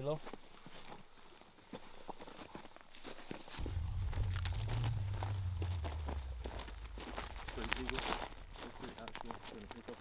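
Footsteps crunching over rocky ground, with the clicks and knocks of soldiers' gear and rifles as they move. A low rumble comes in about a third of the way through, and faint voices are heard near the end.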